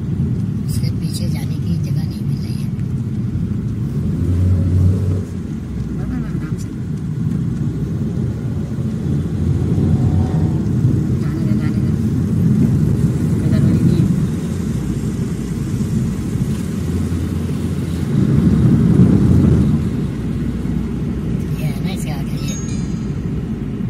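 Road and engine noise heard inside a moving taxi's cabin: a steady low rumble that swells twice, about four seconds in and again near the end.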